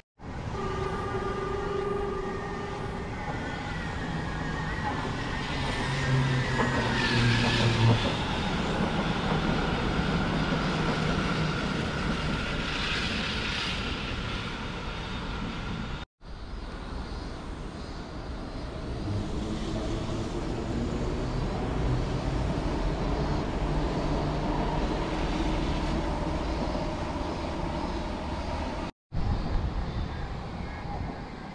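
Outdoor vehicle noise: a steady motor hum with several engine tones that shift in pitch. It breaks off in two short silent gaps, about halfway through and near the end.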